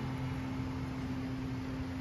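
A woman's voice holding one steady hummed note, with a faint hiss behind it.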